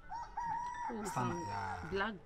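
A rooster crowing once, one long call lasting about a second and a half, with a person's voice coming in about a second in.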